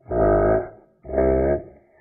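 Two drawn-out, low-pitched vocal calls, each about half a second long, the second starting about a second in.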